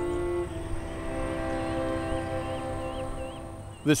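Background music of sustained string chords, changing chord about half a second in and easing off near the end.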